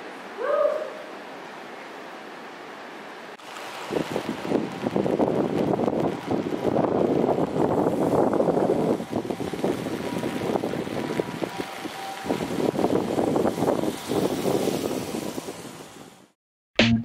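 Quiet background with one short rising squeak about half a second in, then from about four seconds a dense, steady patter of rain on a wet wooden deck. The patter dips briefly about twelve seconds in and fades out at the end.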